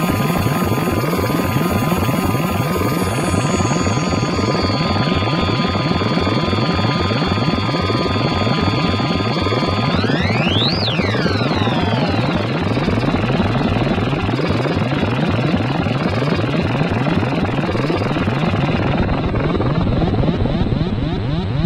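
Modular synthesizer patch run through filters: a fast, dense pulsing throb under steady high tones. About ten seconds in, a tone sweeps sharply up and back down, after which the high tones drop out, and near the end the top end is filtered away.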